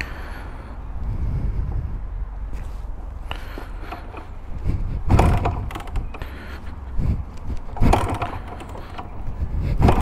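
A 1975 Can-Am 250 TNT's two-stroke single being kick-started without catching: four sharp clunks of the kickstarter, one to two seconds apart, in the second half. The owner is fairly sure the stalling and hard starting come from over-fueling.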